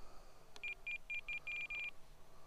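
Radio-control transmitter beeping as the pilot clicks the trim: a click, four short high beeps, then a quicker run of beeps for about half a second near the end as the trim is held.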